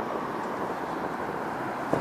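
Steady noise of city road traffic, with one short knock just before the end.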